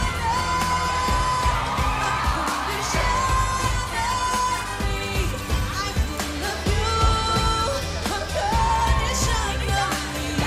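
Pop song with a singer holding long notes over a steady beat.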